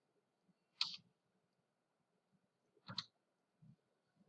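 Near silence with two faint, short clicks, one about a second in and a sharper one about three seconds in, typical of a computer mouse being clicked to advance the slide.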